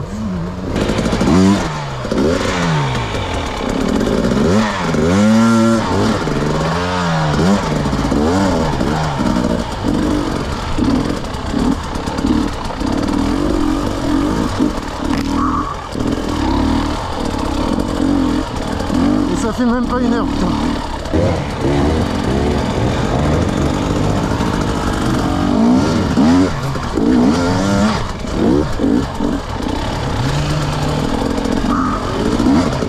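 KTM 250 EXC single-cylinder two-stroke enduro motorcycle engine, revving up and down in repeated throttle blips for the first several seconds, then running at a steadier, labouring pitch as it is ridden slowly over rough rocky ground.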